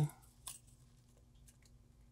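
Thin metal Boone gauge blade passed through the contact between plastic typodont teeth: one sharp click about half a second in, then a couple of faint ticks over low room tone. The gauge going through is the check that 0.2 mm of interproximal reduction has been reached.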